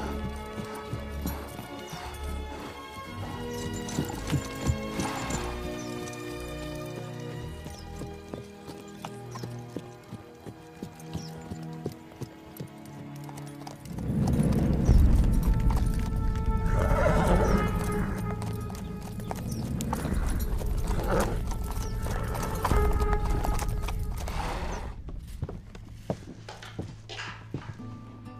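Film score music over a horse's hooves clip-clopping, with a horse whinnying. About halfway through, the sound turns much louder and deeper.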